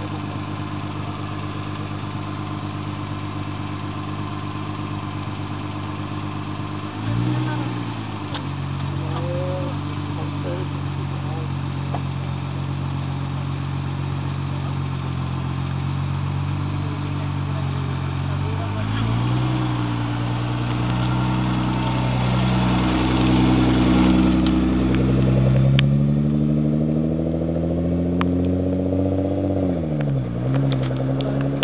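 Nissan GT-R's twin-turbo V6 idling, blipped once about 7 seconds in and again about 19 seconds in. From about 22 seconds its note climbs steadily as the car pulls away, then drops near the end.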